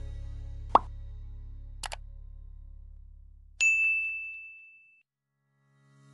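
Subscribe-animation sound effects over the fading tail of a low music drone: a pop just under a second in, a quick double click near two seconds, then a single bright bell ding that rings out for over a second. Music starts again just at the end.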